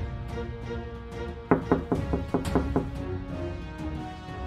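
Background drama score of held, sustained tones, broken about a second and a half in by a quick run of about eight sharp percussive hits that are the loudest part.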